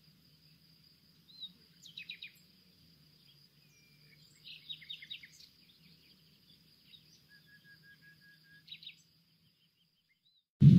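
Faint birds chirping in scattered short calls and trills, over a thin steady high tone; a run of evenly spaced notes comes near the end.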